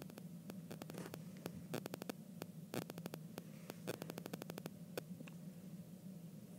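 Apple Pencil tip tapping and ticking on the iPad's glass screen as lines are drawn, faint, in irregular clusters of quick clicks, over a steady low hum.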